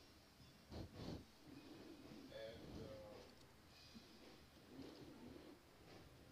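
Near silence: faint workbench handling noise, with a couple of soft knocks about a second in.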